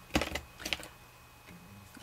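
A few light clicks of plastic marker barrels knocking together as a bundle of fabric markers is handled and set down, all within the first second, then quiet.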